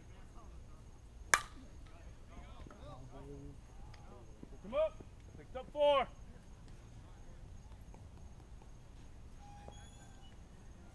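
A softball bat striking a pitched ball with a single sharp crack, the loudest sound, followed a few seconds later by two short shouts from players.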